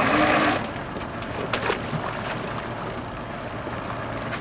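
Lobster boat's engine and hull running steadily, with a short rush of noise at the start and a couple of light knocks about a second and a half in.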